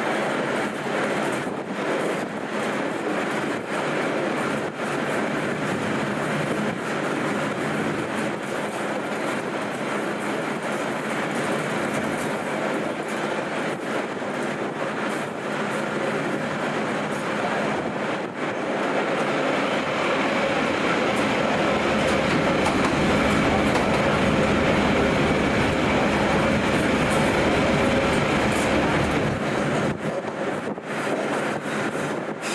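Passenger train running along the track: a steady rumble of wheels on the rails with the clickety-clack of rail joints, growing louder in the last third.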